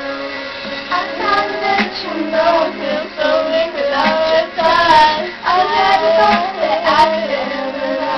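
Young girls singing a melody with no clear words over a recorded pop ballad backing track, which holds a steady chord underneath; the singing comes in about a second in.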